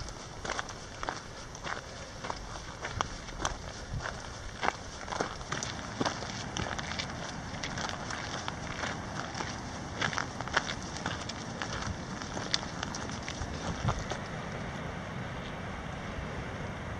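Footsteps on a dirt and gravel trail while walking uphill, about two steps a second, over steady wind noise.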